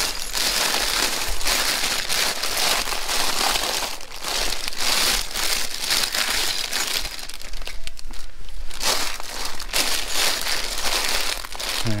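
Plastic LEGO polybags crinkling and rustling as a hand rummages through a wire bin of them, a continuous crackle with brief lulls.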